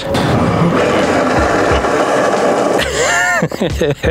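Honda Motocompacto electric scooter braking on its drum brakes, with its small tyres rolling on asphalt: a harsh, gritty scraping for about three seconds that then stops. A short laugh follows near the end.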